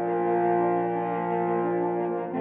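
A French horn choir holds a soft sustained chord, while a quick figure of repeated short notes runs underneath.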